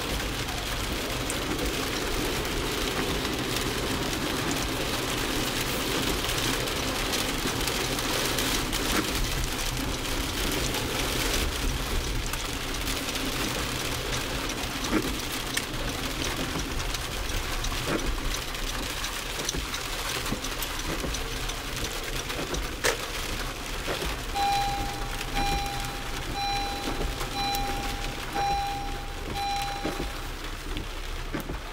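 Heavy rain on a car's roof and windshield, heard from inside the cabin while driving on a wet road: a steady hiss with scattered ticks of drops. Near the end a pitched electronic beep starts, repeating about once a second.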